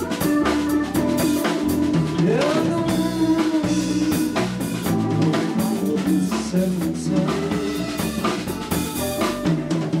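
Live blues band playing an instrumental passage: drum kit keeping a steady beat under electric bass, electric guitar and a Hammond SK1 keyboard, with a note bent upward about two and a half seconds in.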